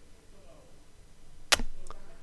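A single sharp click of a computer keyboard key about one and a half seconds in, followed by a fainter second click.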